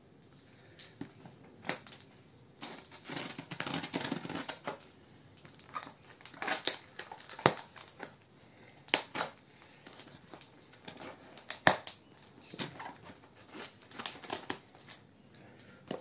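Scissors cutting and scraping through packing tape and cardboard on a parcel: irregular sharp snips and clicks, with short stretches of crinkling and scraping.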